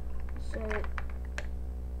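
A few sharp small plastic clicks as LEGO bricks are handled, over a steady low hum.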